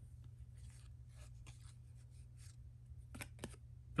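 Faint rustles and slides of cardboard trading cards being flipped through in the hand, with a couple of sharper clicks near the end, over a low steady hum.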